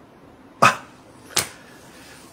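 Two short breathy bursts about three quarters of a second apart: a man's quiet, breathy laugh.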